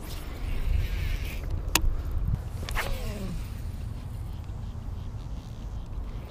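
Wind rumbling on the microphone, with a baitcasting reel's brief whirring and two sharp clicks, about two and three seconds in, as the rod is cast and worked.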